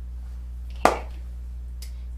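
A single sharp tap about a second in, over a steady low hum.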